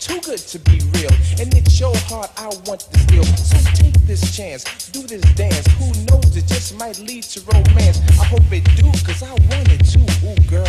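Hip hop track from a DJ mixtape, with a rapping voice over drums and a deep bass line. The bass returns in heavy stretches about every two seconds.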